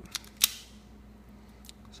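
Hand-held automatic wire stripper squeezed on a thin wire: a small click, then a sharp snap of its jaws about half a second in.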